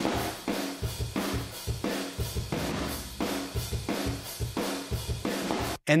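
Room-microphone tracks of a sampled MIDI drum kit soloed, playing a steady groove of kick, snare and cymbals with a roomy ambience. This is the most realistic-sounding part of the sampled kit. Playback cuts off just before the end.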